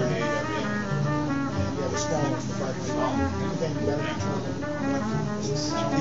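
Instrumental music playing over a pair of KEF floor-standing loudspeakers, with held instrument notes over a prominent bass line.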